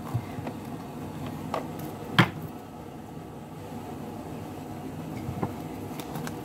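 Tarot cards being handled, a deck lifted and worked in the hands: a few light clicks and taps, with one sharp knock about two seconds in, over a steady low background hum.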